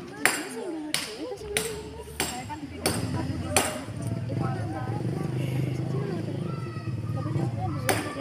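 Sharp knocks of a hammer smashing confiscated mobile phones, about five blows in the first four seconds, over the chatter of a crowd of students.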